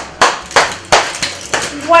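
A person clapping, about three claps a second.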